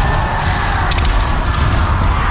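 Many kendo practitioners sparring at once in a hall: overlapping kiai shouts, bamboo shinai cracking on armour and feet stamping on the wooden floor, with many sharp strikes.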